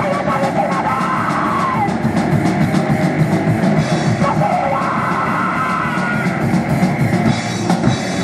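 Live rock band playing: a woman singing and shouting into a microphone over electric guitar, bass and drum kit, her vocal lines coming in two phrases with the band pounding on underneath.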